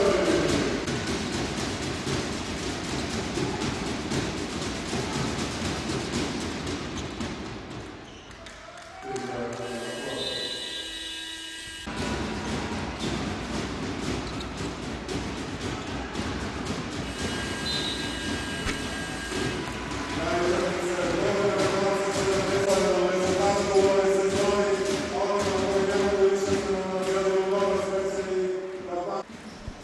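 Basketball arena crowd noise with a ball bouncing on the court. The crowd noise drops away briefly about eight seconds in. From about twenty seconds in, the crowd takes up a sustained, steady chant.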